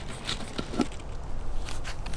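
A few light clicks and rustles of plastic and lettuce leaves as the plant in its red lid is lifted out of a plastic hydroponic bucket.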